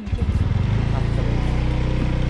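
Motorcycle engine running at a steady pitch while the bike is ridden, with a constant hiss of road and air noise.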